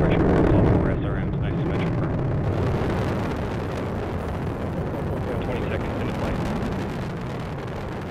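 Delta IV Medium rocket's RS-68A hydrogen main engine and four solid rocket motors in the first seconds of ascent, a loud, dense rumble that is strongest at the start and slowly fades as the rocket climbs away.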